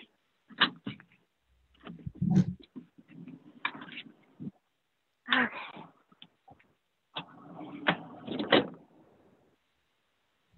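Handling noise from a phone being carried as someone moves about: scattered clicks, knocks and rustles, with a heavier thump about two seconds in.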